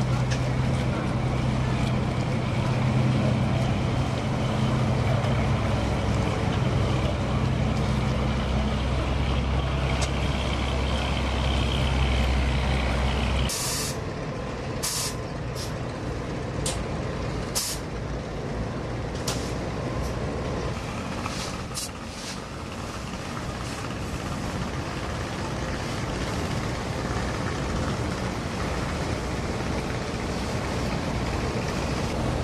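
A boat engine drones steadily and loudly, then cuts off abruptly about halfway through. After that, softer wash of river water and wind with a few scattered sharp clicks.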